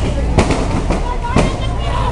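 Loud sharp bangs repeating about twice a second, three of them, over the voices of a crowd.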